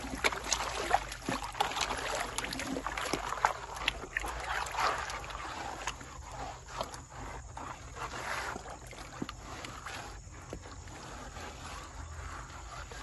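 Water splashing and sloshing in a gold pan being shaken and hand-swept in a shallow stream, washing sediment out over the rim. It is busy with quick splashes for the first half, then calmer and softer after about six seconds.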